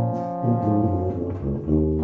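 A brass ensemble of trombones and tuba playing sustained chords, the harmony changing about half a second in and again near the end.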